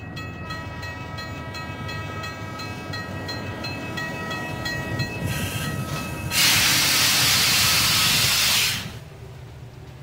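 Train rolling in with a low rumble and a steady high tone over it, then a loud hiss of steam let off about six seconds in, lasting some two and a half seconds.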